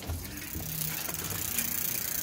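Mongoose IBOC mountain bike's drivetrain being turned over: chain and rear freewheel running steadily as the bike is tested and found to work.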